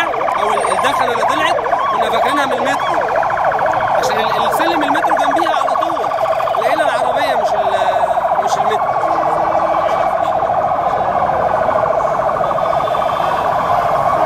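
Emergency vehicle siren sounding continuously with a very rapid warble, over voices of people in the street.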